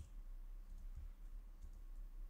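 Faint computer keyboard typing: a sharp key click right at the start, then a few soft low thuds of keys being pressed.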